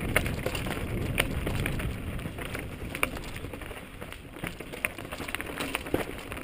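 Mountain bike rolling down a dry, rocky dirt trail: tyres crunching over loose stones and the bike rattling, heard as a steady low rumble with scattered sharp clicks.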